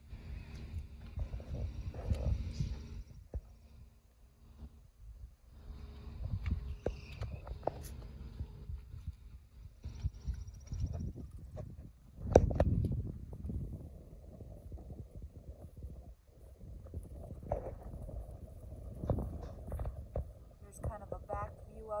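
Wind rumbling on a handheld phone microphone, with handling noise and one loud knock about twelve seconds in.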